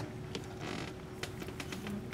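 Faint light clicks of glass beads against each other and a short rasp of beading thread drawn through them as the needle comes back up through two beads.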